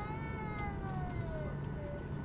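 Steady low cabin rumble of a Boeing 737-800 taxiing on its CFM56 engines. Over it, a single drawn-out high-pitched wail rises briefly just after the start, then slides slowly down over about a second and a half.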